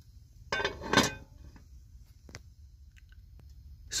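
Metal casserole pot, lid and foil tray being handled on a camp stove: a short burst of metal-and-foil clatter about half a second in, then a single sharp clink a little after two seconds, with a few faint ticks after it.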